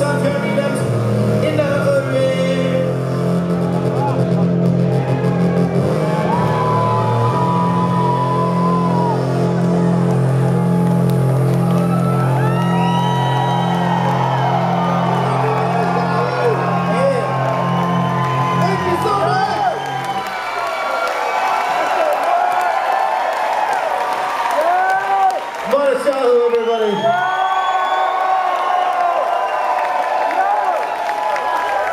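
Live electronic dance music through a club PA, a pulsing bass line under it, with the audience whooping and cheering over the top. About twenty seconds in the bass cuts off as the song ends, and the crowd keeps cheering and whooping.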